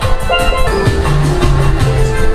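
Steel pan playing a bouncy melody of short ringing notes over a bass line and a steady drum beat.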